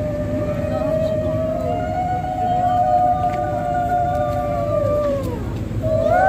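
Conch shells blown together, holding long steady notes that sag downward in pitch about five seconds in. New blasts start right after.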